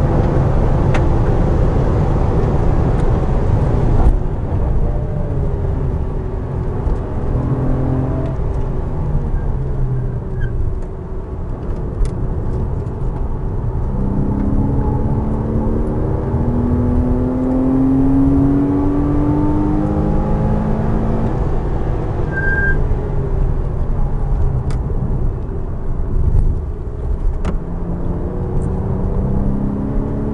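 Porsche Cayman S flat-six engine heard from inside the cabin at track pace. The revs drop away under hard braking, then climb steadily as the car accelerates out of the corner, with gear changes breaking the pitch.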